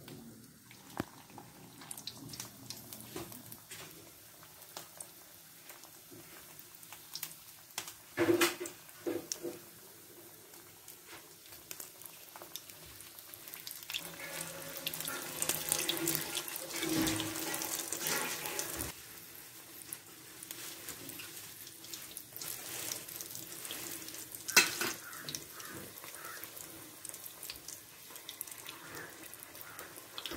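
Toothpick-skewered snack rolls deep-frying in hot oil in a cast-iron kadai: a steady crackling and bubbling that swells in the middle stretch. A few sharp knocks stand out above it, the loudest about eight seconds in and near 25 seconds.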